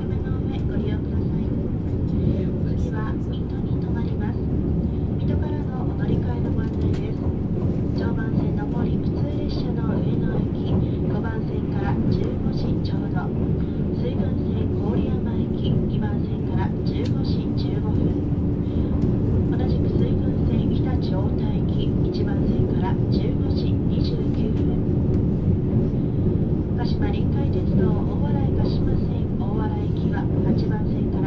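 Interior running noise of a JR East E657 series limited express electric train at speed: a steady low rumble with a constant hum, with faint voices of people talking in the carriage.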